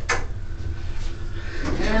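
A sharp click, then the doors of a US Elevator hydraulic elevator sliding open, over a low steady rumble.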